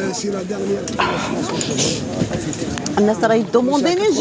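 People talking at a busy market stall, with a noisier stretch of rustle and mixed sound in the middle.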